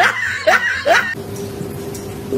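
A person laughing in a quick run of short, high-pitched squeals that cuts off abruptly about a second in. A quieter steady hum follows.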